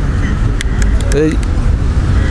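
A loud, steady low rumble of outdoor background noise, with a man saying one short word a little after a second in.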